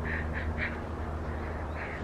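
A few short, faint bird calls, unevenly spaced, over a steady low rumble.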